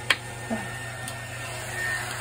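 A single sharp click just after the start, from a craft item being handled or set down on the table, with a small knock soon after and a faint tick about a second in, over a steady low hum.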